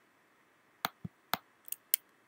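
Five or six short, sharp clicks of a computer keyboard and mouse during the second half, as numeric values are entered in software.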